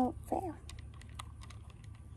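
Small, sharp, irregular clicks and taps from hands handling slime and its plastic containers, about four or five a second.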